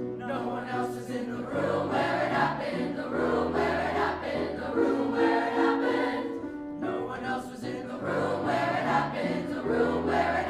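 High school mixed choir singing a musical-theatre medley arrangement together, with grand piano accompaniment underneath.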